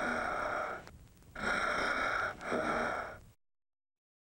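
Raspy, breathy vocal sound, like hoarse gasps, heard three times. The last one cuts off suddenly.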